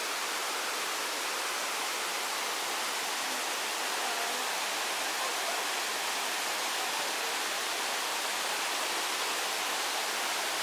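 River water rushing over rocks in small rapids: a steady, even rush that does not let up.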